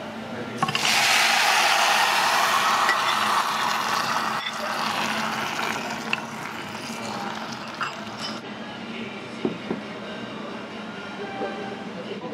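Hot seafood-and-vegetable sauce poured onto rice crust (okoge) in a heated stone bowl, setting off a loud sizzle. The sizzle starts suddenly about a second in and dies away gradually over several seconds.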